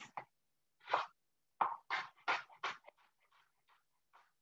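Kitchen knife chopping onion on a cutting board: a single chop about a second in, then a run of quick chops at about three a second that trails off near the end.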